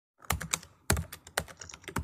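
Computer keyboard typing: irregular clusters of sharp key clicks, used as an intro sound effect.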